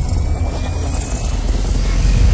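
Cinematic logo-intro sound effect: a deep, steady low rumble with a faint high tone gliding slowly upward over it.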